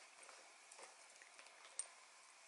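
Near silence with faint handling noise of a quilted leather handbag and a silk scarf being threaded through its strap, and one small sharp click near the end.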